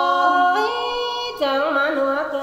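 A singer holding long, drawn-out notes of a Tai (Thái) khắp folk song, unaccompanied. About a second and a half in the note breaks off and the voice moves into a wavering, ornamented phrase.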